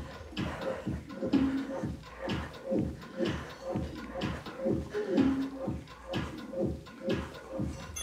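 Background music with a steady beat, about three beats a second.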